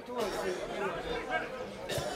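Indistinct voices of people at a football match calling out and chattering at a distance, with a short sharp knock near the end.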